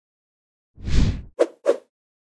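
Cartoon transition sound effects as the screen changes to the next question: a short whoosh about three-quarters of a second in, followed by two quick pops.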